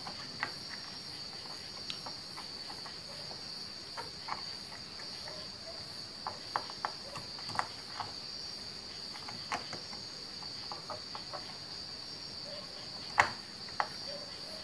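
Scattered light plastic clicks and taps as a DDR2 memory stick is handled and fitted into a motherboard memory slot, the sharpest knock about a second before the end. Under them runs a steady high cricket trill.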